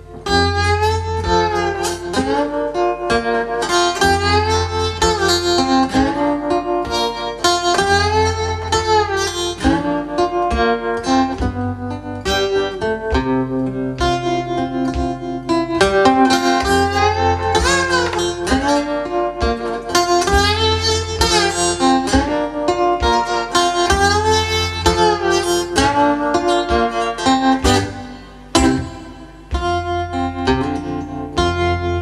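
Live acoustic guitar playing an instrumental passage, with notes sliding up and down in pitch over a steady bass line; the playing briefly drops away near the end.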